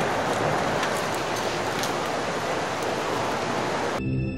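A steady rushing noise with a few faint crackles scattered through it.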